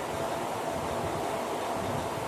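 Steady hiss of background room noise, with no distinct events.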